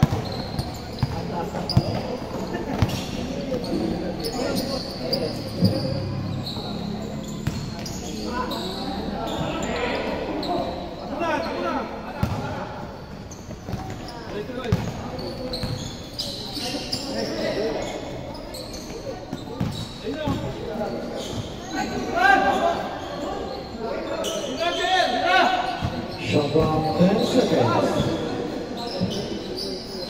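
A basketball bouncing on a hard gym floor during live play, with scattered knocks and indistinct voices echoing in a large hall.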